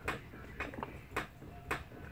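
A few irregular, sharp clicks and ticks as homemade slime is stirred in plastic cups and worked by hand.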